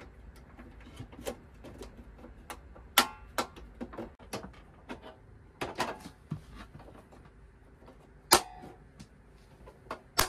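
Irregular clicks and knocks of metal drawer hardware on an IKEA Maximera drawer box as the drawer front is handled and lined up for attaching. About a dozen separate clicks, the sharpest about three, six and eight seconds in.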